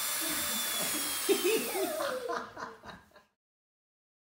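Battery-powered toy drill whirring with a steady high whine, then winding down with falling pitch about two seconds in as it is switched off. A toddler giggles and babbles over it.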